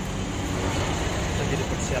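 Steady background noise with a low rumble, like street traffic, and a faint voice near the end.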